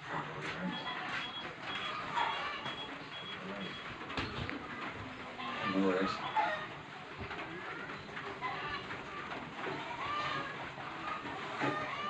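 Indistinct voices in the background. About a second in, a faint high-pitched pip repeats about three times a second for some three seconds.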